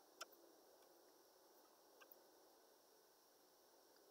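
Near silence: room tone with two faint clicks, one just after the start and one about two seconds in.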